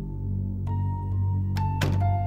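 Soft ambient background score of sustained, held notes, with new notes coming in about a third of the way through and again near the end.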